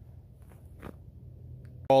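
A pause in a man's talk: faint, steady background noise with a soft tick or two, then his voice starts again near the end.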